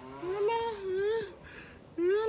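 A man's voice held in one long, high, wordless drawn-out sound, rising into a held pitch and dropping away just over a second in.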